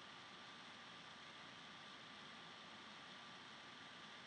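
Near silence: a steady faint hiss with a faint steady high tone under it, and no other sound.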